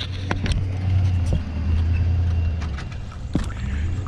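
A vehicle engine running with a steady low rumble that eases about three seconds in, along with scattered sharp clicks and knocks.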